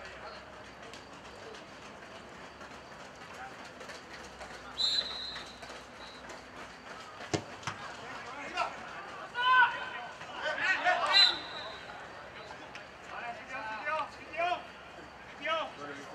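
Outdoor football match: a short referee's whistle blast, a single sharp thump of the ball being kicked about seven seconds in, then players shouting as the ball comes into the goalmouth. A second short whistle sounds about eleven seconds in, amid the loudest shouting.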